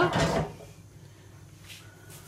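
A metal spoon scraping against the dish of flan mixture, a short scrape in the first half second, followed by quiet room tone.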